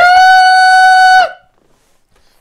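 A man's voice holding one long, loud, high sung note for just over a second, then cutting off, leaving near silence.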